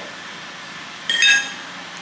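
A single short, bright, ringing clink about a second in.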